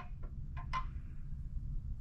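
Quiet steady low hum with a few faint, soft clicks in the first second.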